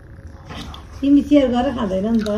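A child's voice making a drawn-out vocal sound that starts about a second in, its pitch wavering before it breaks into shorter syllables.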